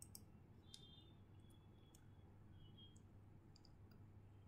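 Near silence with a handful of faint, irregular computer mouse clicks over a low steady room hum.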